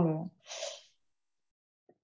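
A woman's voice trailing off on a word, then a short breath in about half a second later, followed by dead silence from a noise-gated video-call line.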